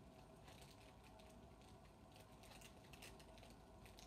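Near silence with faint, scattered light clicks and rustles of a small plastic toy being handled.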